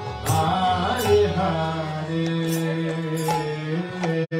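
Live kirtan: a male voice chanting into a microphone over harmonium, settling into a long held note from about a second and a half in. Small hand cymbals (kartals) strike a few times.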